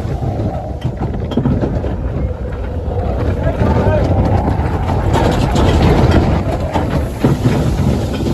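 Matterhorn Bobsleds ride car running along its track: a steady low rumble with scattered rattles, loudest around five to six seconds in.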